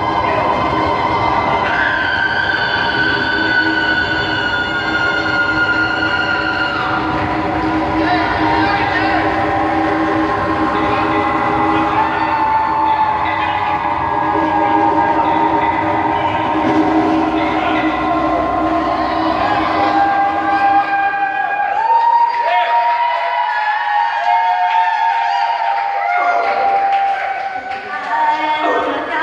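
Loud, sustained droning chords from the band's amplified sound, with no drum beat. About twenty seconds in, the low end drops away, leaving high held tones that bend slightly in pitch.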